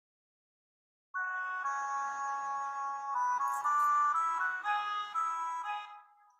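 Notation-software MIDI playback of soprano saxophone and bassoon playing a slow melody in unison, with the bassoon sound mostly heard. It starts about a second in with a held note, then moves through several notes and fades near the end.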